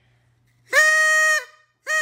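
Paper party horn (blowout noisemaker) blown: one steady, buzzy blast of about two-thirds of a second a little under a second in, then a second blast starting near the end.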